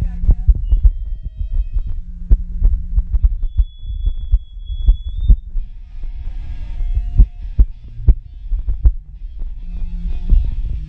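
Irregular low thumps from the drum kit and bass guitar between songs, with a few short held bass notes and a thin high tone for a second or two about halfway through, heard through a phone's microphone in a small room.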